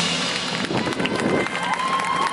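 A marching band's held chord breaks off at the start, leaving a short lull of crowd voices and field noise; a gliding, arching tone comes in near the end as the music picks up again.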